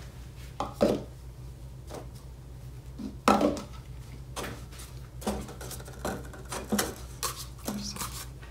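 Small plastic cauldrons and plastic cups being picked up and set down on a tabletop: a series of short, scattered light knocks and taps, about eight in all, over a steady low hum.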